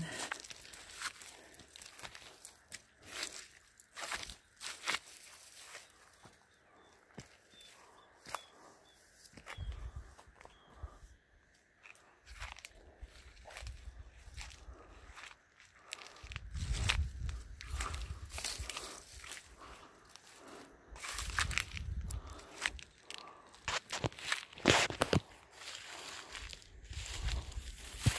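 Footsteps crunching and rustling through dry grass and brush, in irregular steps with stems brushing and snapping, and a few spells of low rumble in between.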